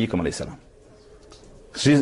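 A man speaking in Bosnian, trailing off about half a second in, then a pause of about a second before his voice returns near the end.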